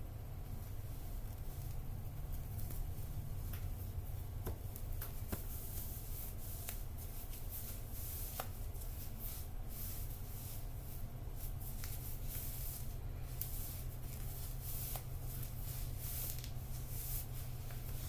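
Dry rustling and brushing of a knit sock as it is pulled onto a foot and up the leg by hand, in short scrapes that come thicker in the second half, over a steady low hum.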